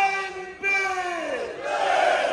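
A man's voice shouting a long chant call through a microphone, the pitch falling away at the end, answered near the end by a crowd of players and fans shouting back together.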